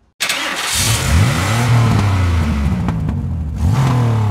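Car engine revving as an intro sound effect: the pitch climbs, holds, drops back and then climbs again near the end.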